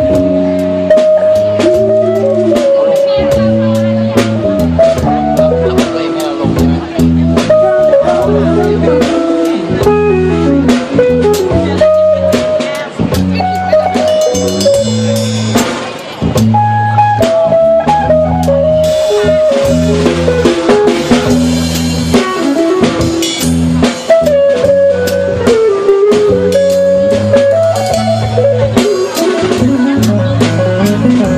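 Live band playing an instrumental passage of a song: drum kit and guitars with a sustained melodic lead line over a steady beat.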